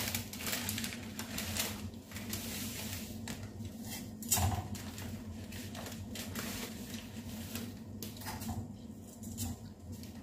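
Water boiling in a stainless steel pot on a gas hob: a steady hiss with many small irregular clicks and taps, as dry spaghetti is handled and put into the pot.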